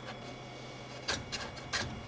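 A few light knocks and scrapes as the RA3 rotary's support base is slid along its tracks on the laser bed, over a faint steady hum.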